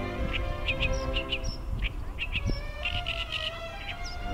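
Oriental reed warbler singing: a run of short, quick notes, several a second, over background music.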